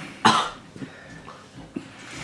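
A young man coughing once, sharply, about a quarter second in, a reaction to the burn of a ghost chili pepper he has just swallowed.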